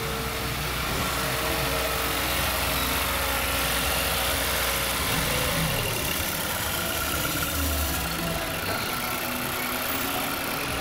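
2010 Mazda CX-7's 2.3-litre turbocharged four-cylinder engine idling steadily, heard close in the open engine bay.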